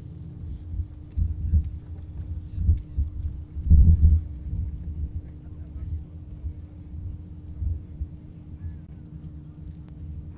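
Wind buffeting an outdoor microphone: a low, gusting rumble that swells and fades, loudest about four seconds in, over a faint steady hum.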